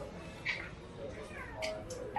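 Faint voices of other people in a shop, well below the close narration, with short high-pitched sounds about half a second in and again near the end.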